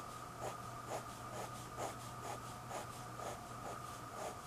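Pen tip scratching across sketchbook paper in short strokes, about two a second, as a line is drawn with each stroke. A faint steady high hum runs underneath.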